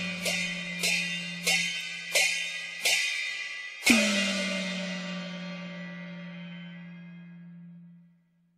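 Cantonese opera percussion playing the song's closing cadence: cymbal and gong strikes about 0.7 s apart, then a final loud crash about four seconds in that rings on and fades away to end the piece.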